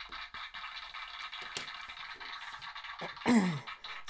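Tinny playback through the small speaker of a hand-held push-button sound device: a thin, buzzy, music-like sound that ends about three seconds in with a steeply falling glide in pitch.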